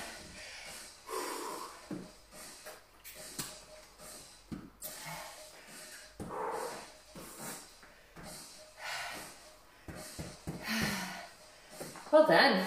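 A woman breathing hard, catching her breath after an intense workout: a run of deep, hissy breaths in and out, roughly every one to two seconds.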